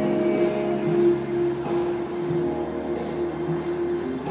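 Background music playing, with long held notes.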